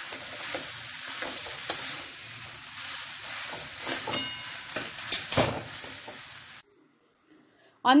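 Mashed potato filling sizzling in oil in a metal kadai while a metal spatula scrapes and knocks against the pan, stirring it. The sound cuts off suddenly about two-thirds of the way in.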